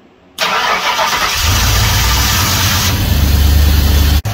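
Ford V8 engine started up: it fires about half a second in, catches, and then runs steadily.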